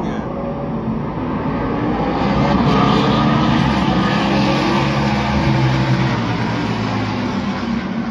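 Vintage stock car engines running loudly, the sound swelling about two seconds in and staying loud to the end.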